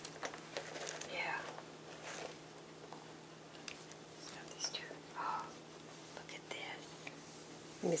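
Light rustling and small clicks of a sheer fabric gift bag being handled and pulled open by hand. Twice, a brief soft murmur or whisper.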